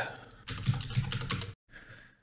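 Typing on a computer keyboard: a quick run of keystrokes starting about half a second in and lasting about a second.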